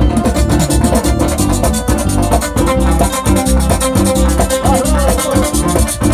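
A live band playing upbeat music: strummed acoustic guitars, electric guitar and drums keeping a steady, quick beat.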